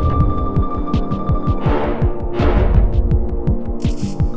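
Dark sci-fi soundtrack drone: a steady hum under a fast low throbbing pulse of about seven or eight beats a second, with a held high tone and washes of hiss that swell and fade a few times.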